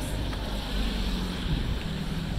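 Steady outdoor city-street noise heard while walking: a low rumble of wind on the phone's microphone mixed with distant traffic.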